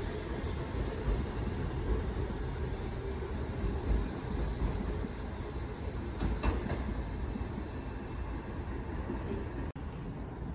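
NYC subway D train running away down the track, a steady rumble with a few wheel knocks over the rail joints, fading slightly as it recedes.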